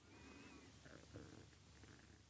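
Near silence: room tone, with a faint wavering sound lasting about half a second at the start and a few faint blips about a second in.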